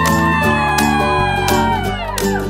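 Background music: rhythmic strummed guitar under one long, high held note that slides up into place, holds and sinks slightly near the end.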